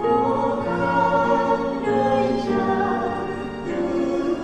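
Church choir singing a Vietnamese Catholic hymn in several voice parts, in long held chords that move from note to note. A new sung phrase begins at the start.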